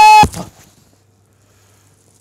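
Time-machine sound effect: a loud, steady, horn-like high tone cuts off about a quarter second in with a short burst, marking the jump in time, then only a faint low hum remains.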